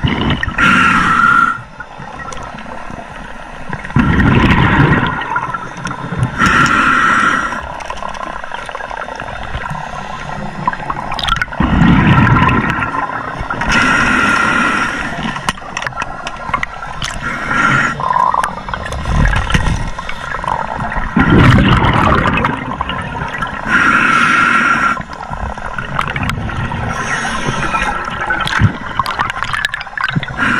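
Scuba diver breathing underwater through a regulator: hissing inhalations alternate with rumbling bursts of exhaled bubbles, a breath every few seconds.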